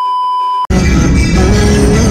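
A steady electronic test-tone beep at about 1 kHz, the kind played over TV colour bars, cuts off abruptly about two-thirds of a second in. Music starts straight after it.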